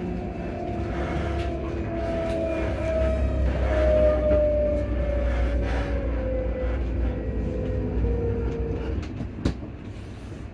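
Class 334 Juniper electric multiple unit in motion: the traction motors whine with a pitch that falls steadily as the train slows, over a low rumble of wheels on rail. A sharp click comes near the end.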